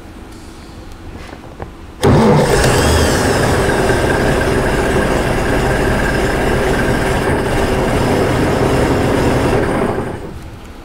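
Vintage Austin Chummy's engine started: it catches suddenly about two seconds in and runs steadily, then dies away near the end.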